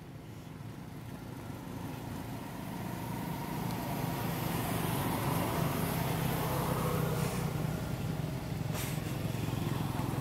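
A motor vehicle engine running, its low hum growing louder over the first half and then holding steady.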